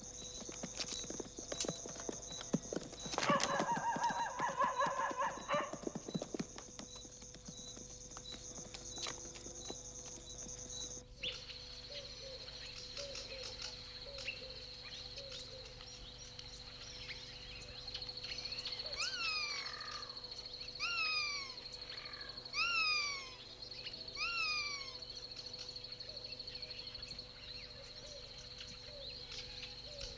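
Film soundtrack ambience: a steady high-pitched chirring drone and scattered light clicks. A horse whinnies once, a few seconds in, for about three seconds. After an abrupt change of ambience, a bird gives a series of short, sharply falling calls, about one a second, for several seconds.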